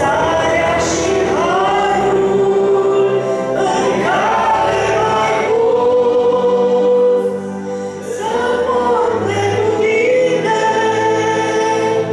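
A woman singing a Romanian gospel song into a microphone, in long held notes that glide between pitches, over sustained electronic keyboard chords. The singing pauses briefly between phrases about seven seconds in.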